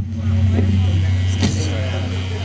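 Steady low hum from the stage's instrument amplification, held at one pitch, with a man's short laugh at the start.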